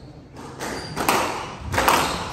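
Squash ball hits in a rally on a glass-backed court: two sharp hits of racket and walls, about a second in and again near the end, echoing in the hall.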